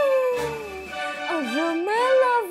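A woman's long wordless vocal exclamation, a drawn-out 'ooh' that slides slowly down in pitch, dips low about a second and a half in and swings back up, over soft background music.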